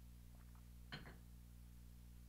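Near silence over a faint steady hum, broken about a second in by a single light knock of a drinking glass being set down on a hard surface.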